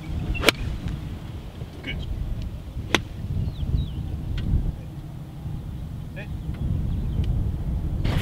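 Golf cart riding across the course: a steady low rumble, broken by two sharp clicks, one about half a second in and another at three seconds.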